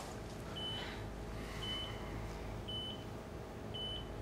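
Hospital bedside monitor beeping steadily: short, high-pitched beeps about once a second, four in all, over a faint room hum.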